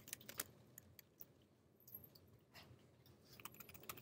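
Faint computer keyboard key clicks, a few scattered through the first second and another short run near the end, over near silence.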